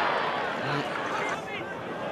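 Steady hubbub of spectators in the stands at a football ground, with a few voices standing out from it.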